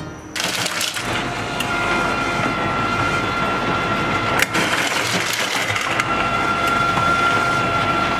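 Ice dispenser running and dropping ice cubes into an ice bucket: a steady machine noise with a faint whine and the clatter of falling ice. It starts abruptly just after the start, has one sharp click about halfway, and cuts off suddenly at the end.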